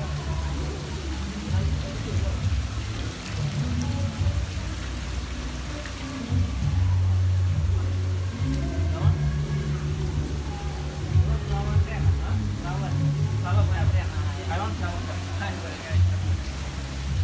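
Background music with a steady bass line and indistinct voices, over an even hiss of water in the live seafood tanks.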